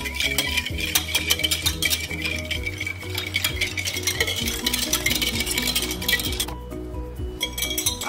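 A metal whisk beating quickly in a glass bowl, rattling and clinking against the glass as brown sugar dissolves into warm water, with a short pause near the end. Background music with a steady melodic line plays throughout.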